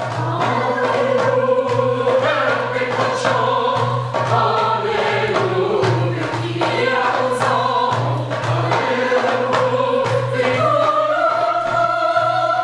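Mixed choir of men's and women's voices singing in harmony, holding long notes. Near the end a higher held line enters.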